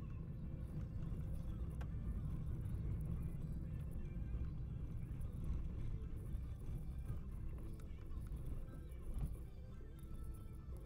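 Steady low rumble of a vehicle driving, heard from inside the cabin, with music playing over it.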